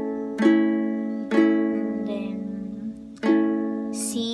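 Ukulele strumming an A major chord three times, each strum left to ring out.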